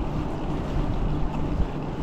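Wind buffeting the microphone of a camera on a moving e-bike: a steady rushing noise with a low rumble.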